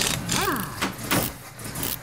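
Logo sound effect in the style of a car: a burst of engine-like noise whose pitch rises and falls once, then a few sharp clicks, fading out near the end.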